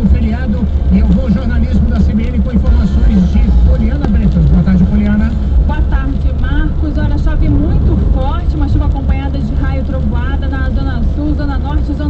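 Steady low engine and road rumble inside a moving car's cabin, under a continuous voice from the car radio.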